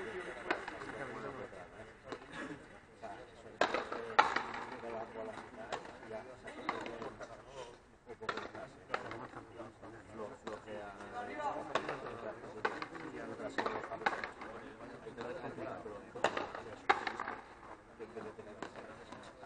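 A frontenis rally: a rubber ball struck with strung rackets and smacking off the fronton wall, giving a string of sharp cracks at irregular intervals, loudest about four seconds in and near the end.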